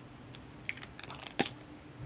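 Light clicks and taps of plastic ballpoint pen parts being handled and set down on a tabletop: a handful of short clicks, the loudest about a second and a half in.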